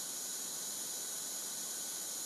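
Steady faint hiss of background recording noise, sitting mostly in the high range, with nothing else happening.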